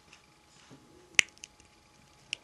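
Small plastic Lego pieces, the green rubbish bin and its lid, being handled: one sharp click a little past halfway, with a few faint taps around it.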